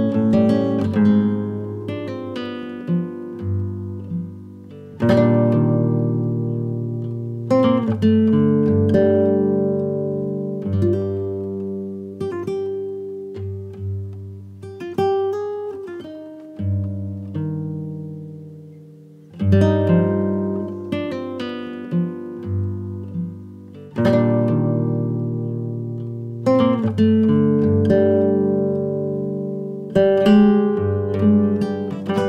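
Background music on solo acoustic guitar: picked notes and struck chords that ring and fade, with a fresh chord every few seconds.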